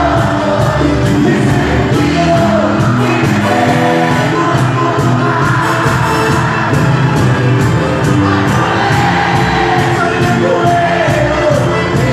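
Live cuarteto band playing loudly with keyboards, drums and hand percussion on a steady beat, with singing over it and the crowd of a large hall audible underneath.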